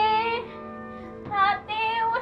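A high female voice singing a slow melody in three short phrases over held, sustained instrumental chords.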